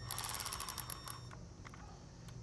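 Socket ratchet clicking rapidly for about the first second, backing out an engine-bay bolt, then a few faint ticks.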